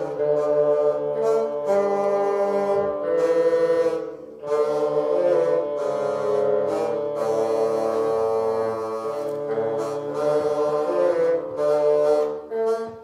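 A small bassoon ensemble playing a piece live, with several bassoons holding sustained notes in harmony. There is a short break in the phrase about four seconds in.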